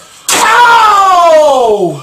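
A person's voice giving one long, wordless exclamation that slides steadily down in pitch for about a second and a half.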